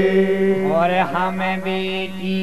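Male voices singing a Bundeli Diwari folk song, chant-like and with no drums heard. A long held note, just slid down in pitch, carries on steadily while a voice sings a phrase over it from about half a second in.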